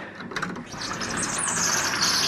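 Sliding screen door rolling open along its track: a few clicks as it starts, then a rolling rush that grows louder.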